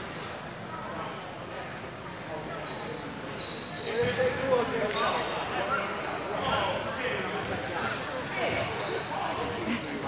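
Basketball gym ambience: a basketball bouncing on the hardwood court, short sneaker squeaks at several moments, a sharp knock about four seconds in, and the voices of players and onlookers.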